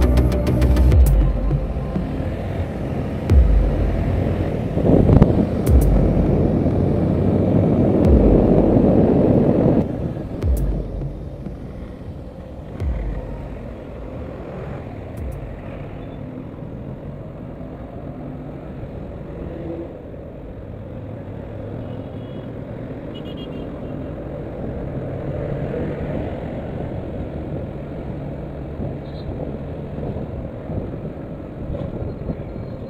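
Onboard sound of a Yamaha FZS V3 motorcycle on the move: its single-cylinder engine with road and wind noise on the microphone and a few low thumps. It is louder for the first ten seconds, then quieter and steadier.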